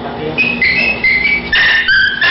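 A small dog whining in a run of high-pitched cries, starting about half a second in and getting louder near the end, as it is held down for a rabies vaccination shot.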